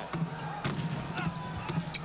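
A basketball being dribbled on a hardwood court, a bounce about every half second, over a low steady hum of arena and broadcast background noise.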